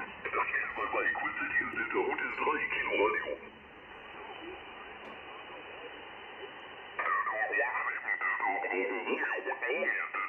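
Single-sideband voice from an amateur station on 40 m, heard through the Icom IC-705's speaker and cut off at about 3 kHz. The talk stops after about three seconds, leaving steady band hiss, and resumes about seven seconds in.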